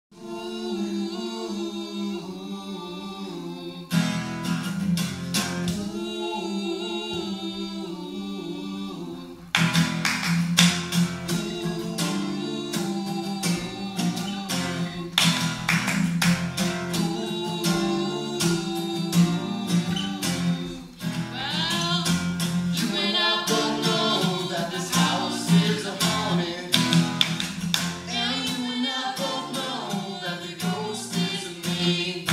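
An acoustic guitar accompanying singing in a song. It starts soft, gets fuller about four seconds in and is strummed hard and steadily from about ten seconds in.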